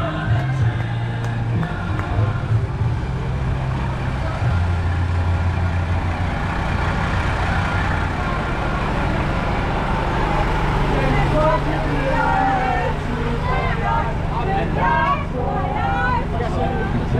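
Old Mercedes-Benz 322 truck's diesel engine idling with a steady low hum, with people's voices close by, more of them near the end.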